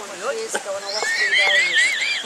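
A person whistling a warbling high note that wavers quickly up and down, starting about halfway through.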